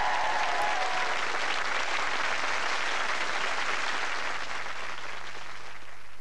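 Television studio audience applauding, with the last held notes of the closing theme music dying away in about the first second. The applause thins out near the end.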